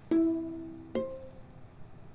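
Two plucked string notes, pizzicato, about a second apart: the first lower and louder, the second higher. Each rings briefly and fades.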